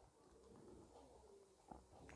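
Near silence: room tone, with a faint low wavering sound in the background and a small click near the end.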